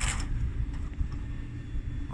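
A low, steady rumble with no clear events in it.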